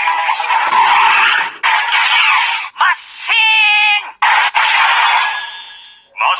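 Kiramai Changer Memorial Edition transformation-brace toy playing its electronic sound effects through its small speaker. It is a string of separate effect sounds, each cut off abruptly by a short silence, with a pitched voice-like call about three seconds in and a thin high tone near the end.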